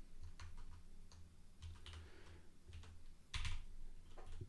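Faint keystrokes on a computer keyboard while code is edited: a scattered run of light clicks with a louder clack about three and a half seconds in.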